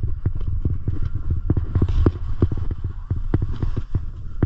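Skis scraping and clattering over firm, thin snow cover on a descent: sharp irregular knocks, about three a second, over a steady low rumble.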